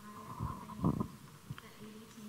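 A few muffled low thumps about half a second to a second in, then a single softer knock, over faint voices in the room.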